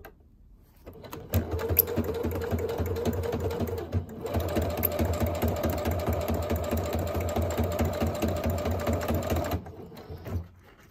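Electric sewing machine running a straight stitch through layered fabric, with rapid, even needle strokes. It starts about a second in, dips briefly around four seconds, runs again and stops shortly before the end.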